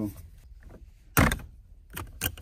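Plastic lower trim cover on a Subaru Crosstrek's gear shift handle snapping loose as a metal pry tool levers it off: one sharp click a little over a second in, and a fainter click near the end.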